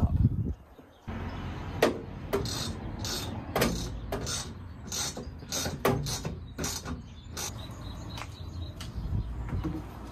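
Irregular metal clicks and knocks as a bolt-on steel bracket and its bolts are lined up and fitted to a van's rear door, over a low steady rumble.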